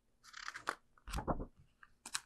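A picture book's paper page being turned: a brief crinkling rustle, then a soft thud of the book being handled as the page settles.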